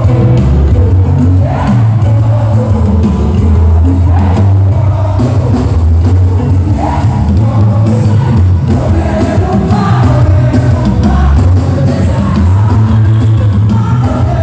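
Live gospel band playing loudly through a PA, with electric guitars, keyboard and heavy bass, and a woman singing lead into a microphone.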